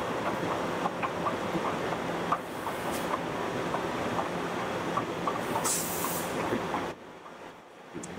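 Willemin-Macodel 408MT CNC mill-turn machine running behind its enclosure: a steady mechanical hum and wash of noise with many small scattered clicks. A brief hiss comes shortly before six seconds in, and the sound drops to a low background about seven seconds in.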